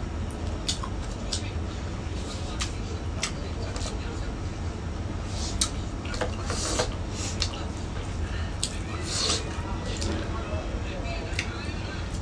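Close-up mukbang eating sounds: irregular wet clicks, smacks and crunches of chewing mustard greens and pork.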